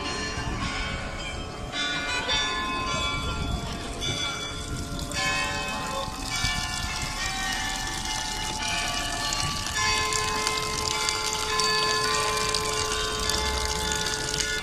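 Church bells ringing: many held bell tones overlapping, with new strikes coming in every second or so, over the murmur of voices.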